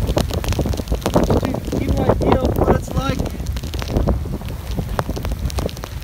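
Strong cyclone wind buffeting the microphone in a gusty, uneven low rumble, with heavy rain falling.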